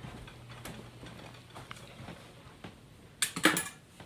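Handling noise from a handheld camera being carried: scattered light clicks and taps over a faint steady hum, with a brief louder rustle about three seconds in.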